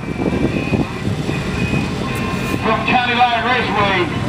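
Low, steady rumble of idling car engines, with an announcer's voice over a loudspeaker coming in during the second half.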